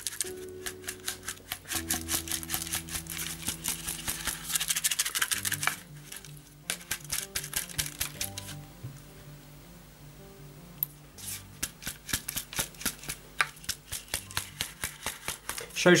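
Hard lumps of limescale rattling loose inside a plastic dishwasher spray arm as it is shaken by hand: a rapid clatter of small hard bits in bursts, pausing for a couple of seconds about halfway through. The scale has built up in the arm and blocks its water jets. Quiet background music with held notes runs underneath.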